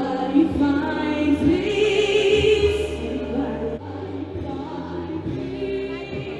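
A woman singing a slow melody with long held notes into a stage microphone, over a backing of sustained keyboard and bass tones.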